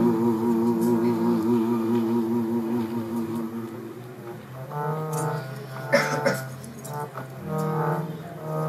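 Sikh simran with harmonium: harmonium and voices hold long, wavering notes that fade out about four seconds in. A low voice then starts a new slow chanted phrase over the harmonium, with a sharp knock about six seconds in.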